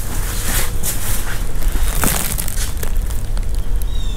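Footsteps and rustling handling noise with scattered small clicks, over a steady low rumble.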